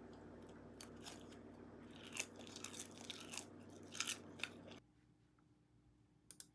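A person eating rice with kimchi and roasted seaweed laver: faint, scattered chewing and crunching with small crisp clicks over a low room hum. It stops suddenly about five seconds in.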